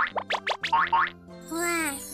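Playful children's-style background music: a quick run of short, bouncy notes that stops a little over a second in. A voice begins just before the end.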